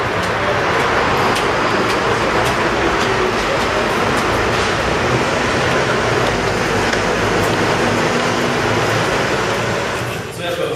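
Steady loud roar of vehicle traffic echoing under a concrete car-park ceiling, with a few faint ticks of footsteps.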